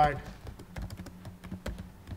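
Typing on a computer keyboard: a quick, uneven run of key clicks, about five a second.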